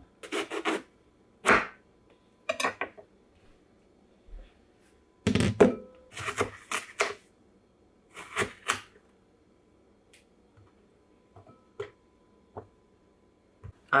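Chef's knife slicing through an eggplant and knocking on a wooden cutting board, in clusters of strokes with pauses between them and a few fainter taps near the end.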